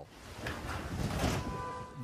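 Hurricane storm noise from a phone recording: floodwater rushing and wind, a rough hiss that swells in the middle and fades again.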